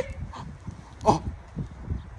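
A man's brief exclaimed "Oh" about a second in, a short falling voice sound, over low outdoor background noise.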